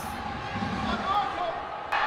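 Indoor velodrome ambience: a soft low rumble, swelling briefly about half a second in, with faint distant voices.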